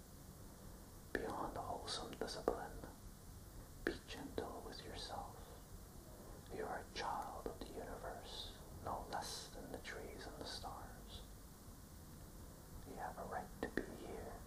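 A man whispering lines of a poem in short phrases, with brief pauses between them.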